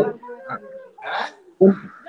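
Short, broken snatches of a voice coming through a glitching video-call connection, cutting in and out.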